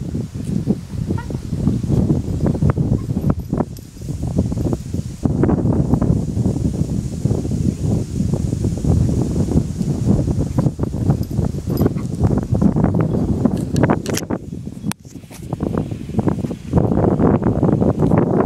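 Wind buffeting the phone's microphone: a loud, rough low rumble that swells and drops with the gusts, falling away briefly twice.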